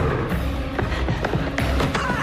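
Film soundtrack: a music score with several sharp hits and thuds cutting through it.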